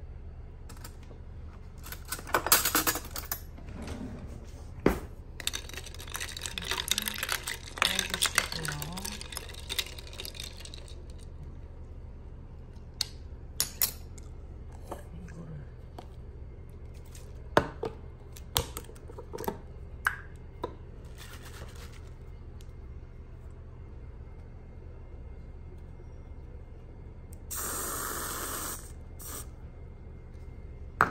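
Clinks and rattles from a glass pitcher of iced latte for several seconds, then scattered sharp clicks. Near the end a whipped-cream aerosol can sprays a steady hiss lasting about a second and a half, under a constant low hum.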